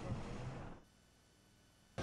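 Faint outdoor background noise that cuts off abruptly just under a second in, leaving near silence: an edit gap in the audio.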